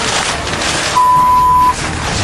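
A broadcast censor bleep: a single steady 1 kHz tone lasting under a second, starting about halfway through, over a noisy background.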